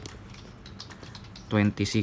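Light pencil ticks and scratching on notebook paper, low and intermittent, followed near the end by a voice saying a number.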